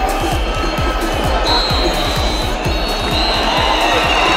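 Electronic dance music with a steady kick-drum beat, over stadium crowd noise that comes in suddenly at the start.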